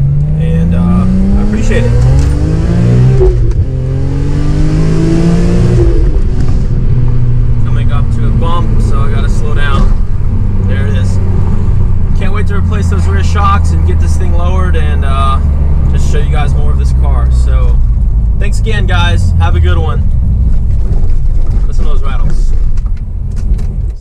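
BMW E46 M3's S54 straight-six, with catless headers and an aftermarket muffler, heard from inside the cabin accelerating hard through the six-speed manual. The revs climb steeply, drop at a gear change about three seconds in, climb again and drop at a second shift near six seconds, then settle into a steady lower-rev cruise.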